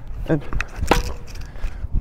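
Tennis ball struck by a racket during a groundstroke rally: a few sharp pops of ball on strings.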